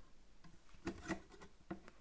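A few faint, sharp clicks and taps of plastic LEGO pieces as a sword piece is pressed into place on a small brick build.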